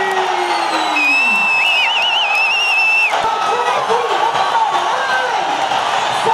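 Stadium crowd shouting and cheering, with many voices at once. From about one to three seconds in, a single long whistle blast sounds over it and trills in the middle.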